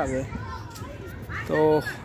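A man speaking close to the microphone, a short word near the end, with faint voices and a low rumble in the background during the pause.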